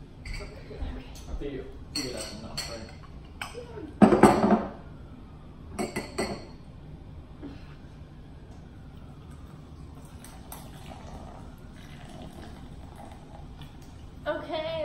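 Glass tumblers filled with ice clinking and knocking as they are set down on a table, the loudest knock about four seconds in; later a canned drink is poured over the ice, fainter.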